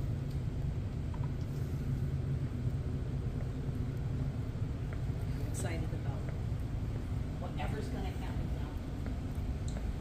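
Steady low rumble of a ship's interior, with faint voices talking in the background now and then.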